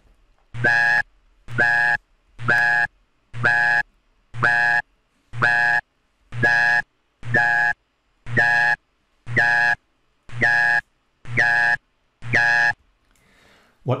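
Thirteen synthetic speech syllables made on a 1957 speech synthesizer (the Haskins Pattern Playback), played one after another about once a second, each under half a second long. They are steps on a continuum: the glide at the start of each syllable changes step by step, so they move from sounding like "ba" through "da" to "ga".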